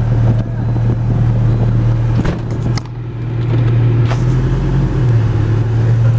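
A 1995 Volvo 850's inline five-cylinder engine idling with a loud, steady low drone, its catalytic converter removed. A few light clicks come as the automatic gear selector is moved, and the engine note dips briefly a little before halfway and then picks up again.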